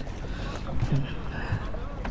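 Low, steady background of wind and water around a small boat, with no clear single event.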